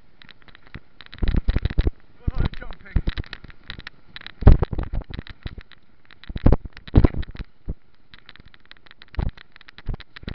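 Mountain bike rattling and knocking over rough trail, picked up through a camera fixed to the frame: irregular clusters of sharp clatter with quieter gaps, the loudest knock about four and a half seconds in.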